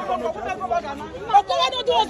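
Speech only: several people talking at once in indistinct chatter, with no clear words.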